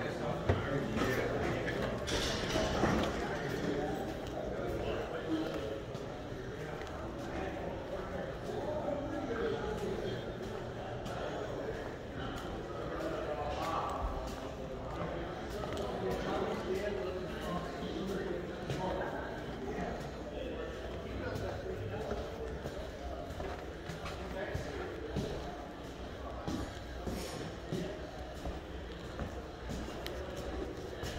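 Indistinct voices of people talking in the background of a large indoor space, none of it clear enough to make out, with faint scattered knocks and steps.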